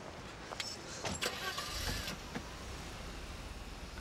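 A couple of short clicks, then a car engine starts about two seconds in and runs on with a low, steady rumble.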